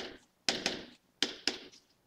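Stylus tapping and scratching on a writing tablet's surface as letters are written: about five short sharp taps, some in quick pairs.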